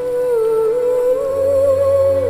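Background music from the drama's score: a slow melody holding one long, slightly wavering note. A low sustained note joins beneath it a little over a second in.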